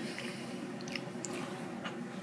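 Faint wet mouth sounds of someone tasting soda: a few small clicks and smacks over a low steady hum.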